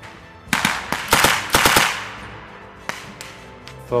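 Light machine gun firing, short bursts of automatic fire starting about half a second in and running for about a second and a half, then a single shot about a second later. The red device on the muzzle is a blank-firing adaptor, so the gun is firing blanks.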